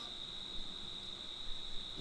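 A steady, unbroken high-pitched tone over faint background hiss, in a pause between a lecturer's sentences.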